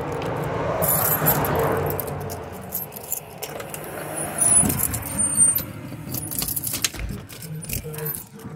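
Keys jangling, with clicks and rattles as a glass storm door is handled and pulled open.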